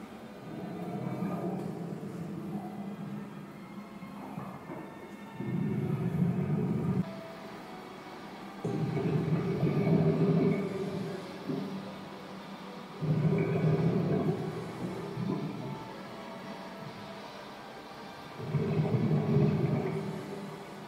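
Low, rumbling music from a wall-mounted TV's soundtrack, coming in blocks of a couple of seconds that start and stop abruptly, four times over a steady background hum.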